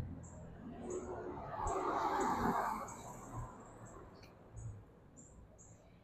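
Small birds chirping, short high notes repeating irregularly, with a soft rushing noise that swells and fades between about one and three seconds in.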